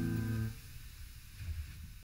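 Final chord of a solo piano piece ringing on, then cut off abruptly about half a second in, leaving only a faint low rumble.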